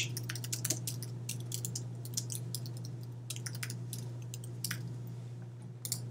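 Computer keyboard typing: irregular, scattered keystroke clicks over a steady low hum.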